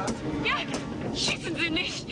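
A man shouting at close range in short outbursts, over background film music.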